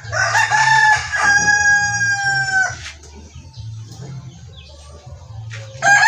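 A rooster crowing: one long call of about two and a half seconds, holding its pitch and dropping slightly at the end, and another crow starting near the end.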